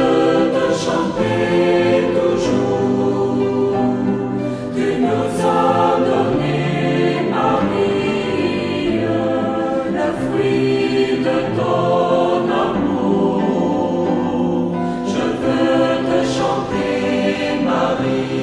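A choir singing a slow Christian hymn, with long held chords that shift from one phrase to the next.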